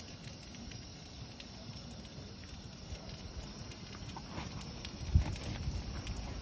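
Faint outdoor ambience with a low rumble, then about five seconds in a sharp thump and a few smaller knocks as the camera is picked up and moved.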